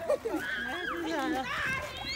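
Excited voices of children and adults at play, calling out over one another, some in high pitched squeals.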